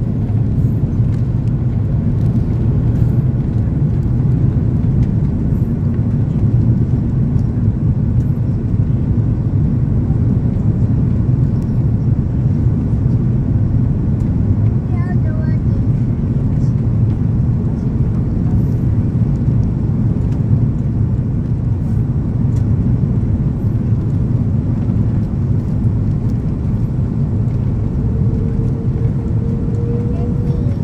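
Steady low roar inside the cabin of an Airbus A330-300 on approach: airflow and its Rolls-Royce Trent 772B engines. A faint steady tone joins near the end.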